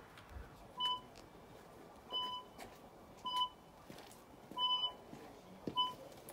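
Five short electronic beeps, evenly repeated about once every second and a quarter, each the same brief tone.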